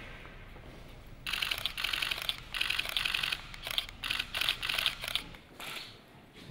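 Press cameras' shutters firing in rapid bursts, starting about a second in and dying away near the end.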